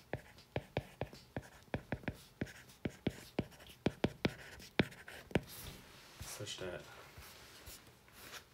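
Stylus tip tapping and ticking on a tablet's glass screen during handwriting: a quick series of sharp taps, about four a second, which stop about five and a half seconds in.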